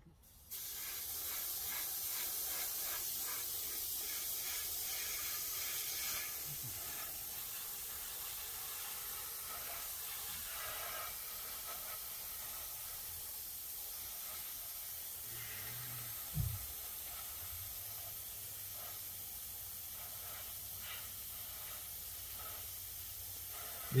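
Dual-action airbrush spraying enamel paint onto a model car body: a steady hiss of air that starts about half a second in and holds with little change. There is a brief low bump about 16 seconds in.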